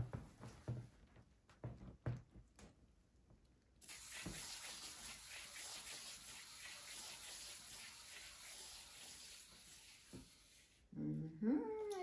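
A few light knocks, then a hand-spun canvas spinner turning with a faint, steady whirring rush for about seven seconds that starts and stops sharply. A short hummed or voiced sound with a rising pitch comes near the end.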